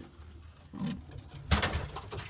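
A domestic pigeon in the loft gives a short low coo a little under a second in, followed at about a second and a half by a sudden, brief, loud noise.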